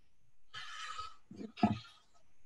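A person's brief non-word vocal sound, in two short breathy bursts with the second one the loudest.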